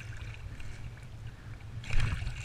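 A hooked pike thrashing at the surface beside a kayak: scattered small splashes, then one loud splash near the end as it breaks the water. A steady low rumble of water and wind on the microphone runs underneath.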